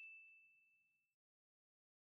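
The fading tail of a single bell-like ding chime sound effect, dying away about a second in, then near silence. The chime marks the switch to the slow-reading part of the lesson.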